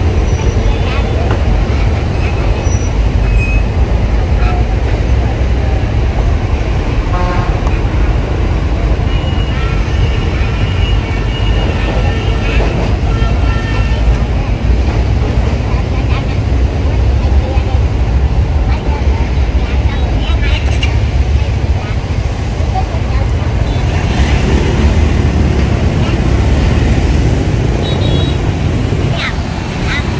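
Dense motorbike and scooter traffic at a busy road junction: many small engines running together in a steady rumble, with horns tooting a few times near the middle.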